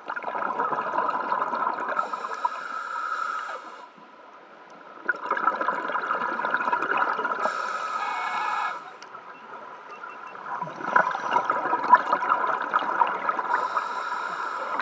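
Bubbles from a scuba regulator's exhaust rushing and gurgling past an underwater camera, in three long bursts of a few seconds each with quieter pauses between breaths.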